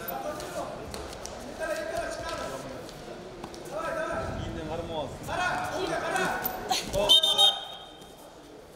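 Voices shouting during a belt-wrestling bout in a large, echoing hall. About seven seconds in there is a sharp thud, the loudest sound, followed by a brief shrill high tone.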